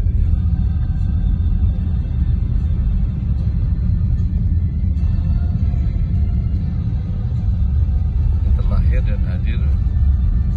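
Steady low rumble of a car driving on a snow-covered road, heard from inside the cabin.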